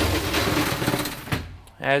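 Gortite aluminum roll-up compartment door on a fire engine being pushed open, its slats running up in a continuous rattling noise that stops abruptly as the door reaches the top, about a second and a half in.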